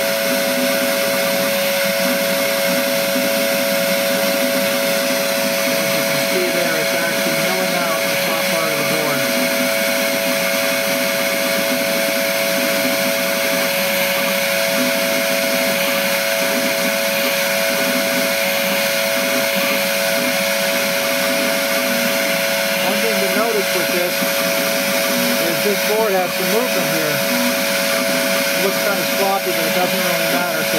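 An LPKF 93s PCB milling machine milling the bottom copper layer of a double-sided circuit board: its spindle runs with a steady whine over the rush of the dust-suction fan. The level stays constant throughout.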